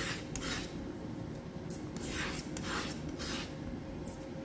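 Metal palette knife scraping and scooping thick sculpture paste on a palette, about five short scrapes.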